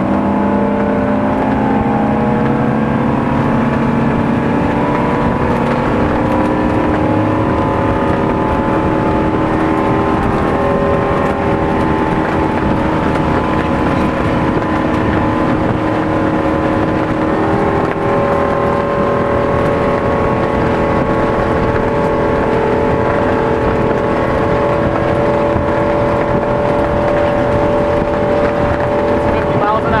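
Rinker 242 Captiva's sterndrive engine running the boat at speed, its pitch climbing slightly over the first few seconds and then holding steady, with a steady rush of wind and water.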